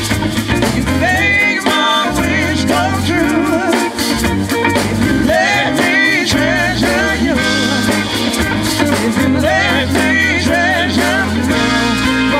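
A live band playing a song: bass and drums under a singing voice with a wavering vibrato line on top.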